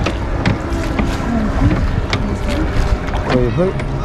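A rowboat being rowed, its oars working in metal oarlocks with occasional sharp knocks and water moving around the hull, over a steady low rumble of wind on the microphone.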